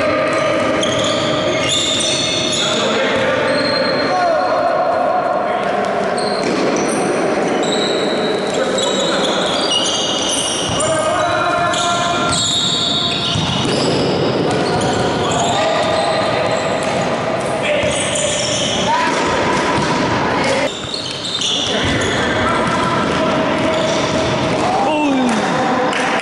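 A futsal game in an echoing sports hall: the ball bouncing and being kicked, many short shoe squeaks on the court floor, and players calling out.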